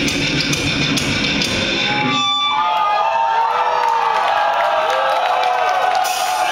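Live thrash metal band playing loud with distorted guitars and drums; about two seconds in, the drums and bass drop out and an unaccompanied electric guitar plays bending, sliding notes.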